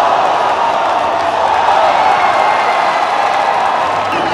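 A large crowd cheering and shouting, many voices blending into one steady roar.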